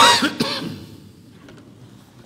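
A man clearing his throat: a sudden loud rasp at the start and a shorter second one just under half a second later.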